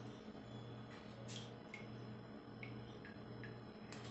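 Liquid drops from a small dropper bottle falling into a bowl of water: several faint, soft plinks at uneven intervals, over a low hum that pulses about once a second.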